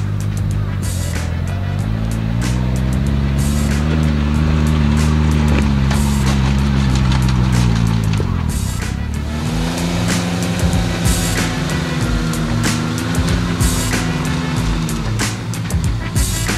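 Suzuki Jimny JB23's small three-cylinder turbo engine pulling under load as the 4x4 climbs a muddy, rutted slope on mud-terrain tyres. The engine note rises and is held for several seconds, eases off, then a second long pull follows and dies away near the end.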